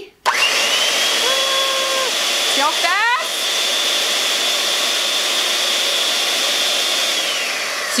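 Electric hand mixer running at speed, its whisk attachment spinning a cardboard tube that winds yarn: a loud, steady motor whine that starts suddenly just after the beginning and drops in pitch as the motor slows near the end.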